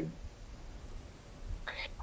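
A pause in a man's speech over a video link: faint background noise, then his voice starts again near the end.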